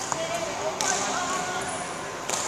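A sharp smack of a badminton racket striking a shuttlecock, about a second in.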